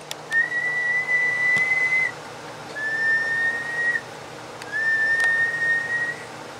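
A person whistling three held, steady notes, each a second or two long with short gaps between them. The whistles are a test tone into a transmitter's microphone to drive a linear amplifier into a dummy load for a power reading.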